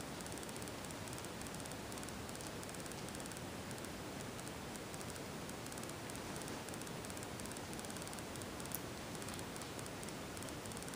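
Steady faint hiss of room tone with light rustling, and one small click near the end.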